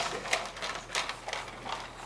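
A dog eating from a stainless steel bowl on a tile floor: irregular clicks and crunches as it chews and its food knocks against the metal bowl.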